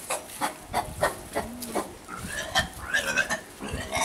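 Trapped wild boar grunting, a quick series of short grunts about three a second, followed by higher, wavering calls.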